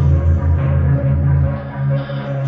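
Experimental electronic music: a deep sustained bass drone under a steady, slightly higher bass tone, with the deepest layer dropping away about one and a half seconds in.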